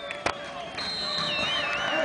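Distant supporters in the stands cheering and chanting, getting louder, with a high wavering whistle over them from about a second in; a single sharp click near the start.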